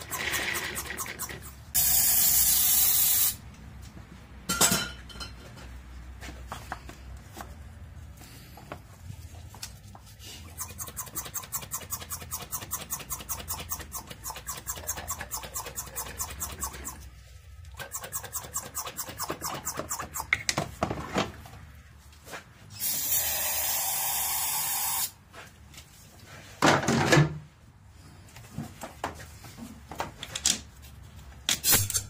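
Vacuum pump drawing spilled oil up a hose out of a spark-plug well, with a fast run of fine ticks and two loud bursts of hiss, one about two seconds in and a longer one near the end.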